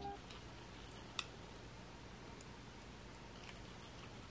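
Clear plastic spoon stirring thick baby rice pudding in a small glass jar, faint, with a few light clicks of spoon on glass, the sharpest about a second in.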